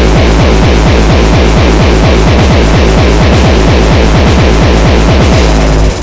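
Hardcore techno in a DJ mix: a fast, heavily distorted kick-drum beat with a dense noisy top. Near the end the highs thin out and the beat stops, dropping into a quieter break.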